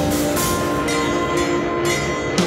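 Live instrumental rock band playing a sustained, droning passage: held electric bass and guitar notes ring on steadily with no drum beats, and the cymbal wash above them thins out about halfway through.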